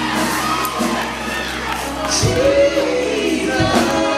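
Live gospel song with a band: a voice holds a long wavering note over keyboards and drums, and the congregation shouts and cheers.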